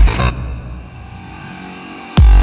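An electro house track drops into a short breakdown. The kick drum and full beat stop about a third of a second in, leaving a quieter sustained synth sound that holds until the beat returns.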